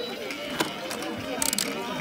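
Plastic buttons of an electronic baby toy ball clicking as they are pressed: a single click about half a second in, then a quick run of clicks about a second later, over background chatter.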